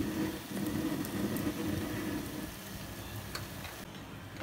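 A spatula stirring cooked chicken pulao rice in a pot on the stove: a soft rustling and light sizzling that eases off about two and a half seconds in.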